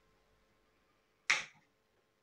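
A single sharp click about a second in as a kitchen knife cuts through a chocolate-glazed doughnut and the blade meets the ceramic plate.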